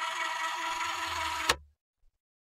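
A steady hissing noise with a low hum beneath it, cut off abruptly by a click about one and a half seconds in, then silence.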